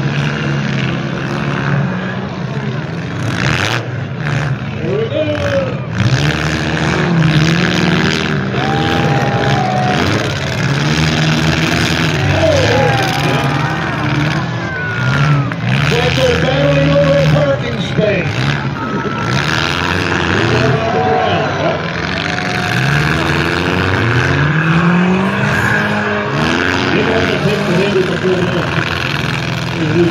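Several demolition-derby compact cars' engines revving up and down as they maneuver and ram each other, with a couple of bangs in the first several seconds. Crowd noise runs underneath.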